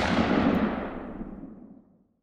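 Logo sting sound effect: the fading tail of a sudden loud noisy hit that struck just before, dying away over nearly two seconds. The highs fade first, leaving a duller rumble at the end.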